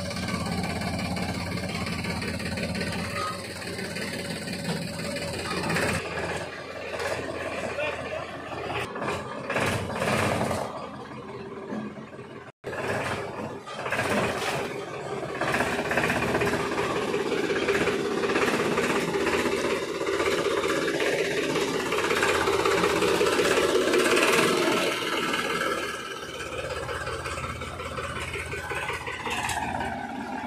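Tractor diesel engine running steadily under people's voices, breaking off abruptly about twelve seconds in and carrying on after.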